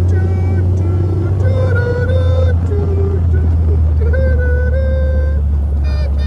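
Steady low rumble of a car driving slowly, heard from inside the cabin. Over it runs a sustained melody of held notes that step in pitch, like singing with music.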